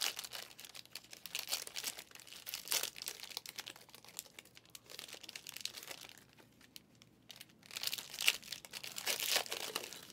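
Foil wrappers of Panini Prizm football card packs crinkling and tearing as they are pulled open by hand. The crackling is irregular, dies away briefly about six seconds in, then picks up again toward the end.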